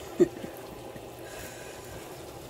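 A short laugh about a quarter second in, then the steady low bubbling of a pot of chicken pelau simmering in its liquid.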